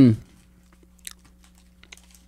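A word trails off at the start, then faint small clicks of snack-eating at the table: one about a second in and a few near the end.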